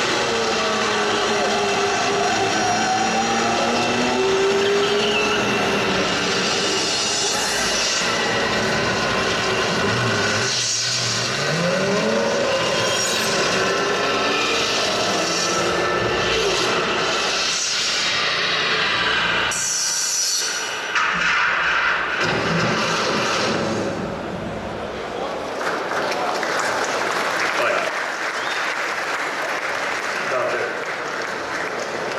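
A promotional racing film soundtrack played over a hall's loudspeakers: race car engines rising and falling in pitch, mixed with music.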